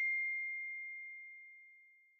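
A single bright bell-like ding ringing out as one high, pure tone that fades away, dying out about a second and a half in.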